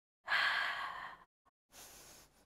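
A woman's deliberate breathing through the Pilates hundred: one loud breath lasting about a second, then a shorter, quieter one near the end.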